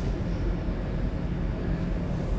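Steady low background rumble with a weaker hiss above it.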